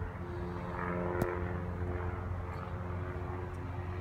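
A car engine idling steadily, heard as a low, even hum, with a single sharp click about a second in.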